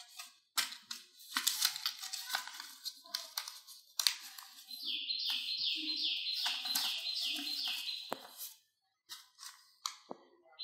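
Paper card rustling and clicking as flaps are slid and folded. About halfway through, a bird starts chirping: a short high call falling in pitch, repeated about twice a second for a few seconds before it stops.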